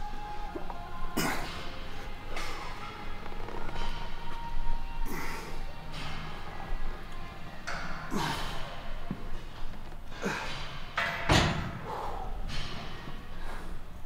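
A man breathing out hard in short, irregular exhales through a set of incline dumbbell curls, with a dull thud about eleven seconds in. Faint background music plays underneath.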